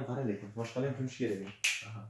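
A man speaking in short phrases with brief pauses, with one sharp hiss about one and a half seconds in.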